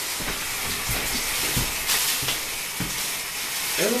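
Thin plastic bag crinkling and rustling as it is handled and pulled on over the head, with a few soft footfalls, over a steady hiss.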